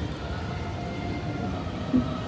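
Steady low background rumble of an open urban space, with a few faint steady hum tones and a short sound right at the end.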